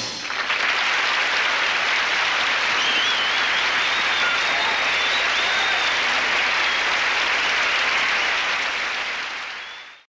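Studio audience applauding after the song ends, fading out near the end.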